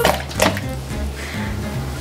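A bath bomb dropped into a tall jar of water, splashing once about half a second in, over background music with a steady beat.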